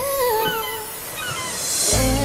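K-pop song breakdown: the bass and drums drop out under a woman's wavering sung vocal run. A rising whoosh sweep then builds until the beat comes back in at the end.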